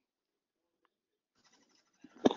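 Near silence on a webinar audio line, with a faint hiss starting near the end.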